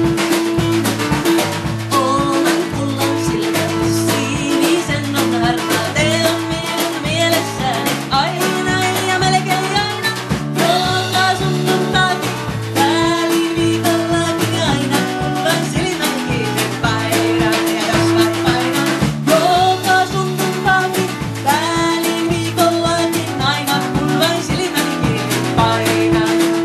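Live band playing a Finnish traditional song: a woman singing over strummed acoustic guitar, electric bass and drum kit, with a steady rhythm throughout.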